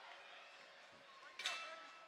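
Quiet arena ambience in a pause of the ring announcement, with one sharp strike about one and a half seconds in that leaves a brief faint ring.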